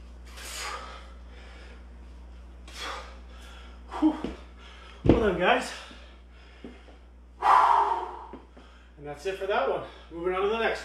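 A man breathing hard after a set of squats: spaced heavy exhalations, then louder breaths with voice in them. A low thump comes about five seconds in, and a long, loud exhale about two and a half seconds later.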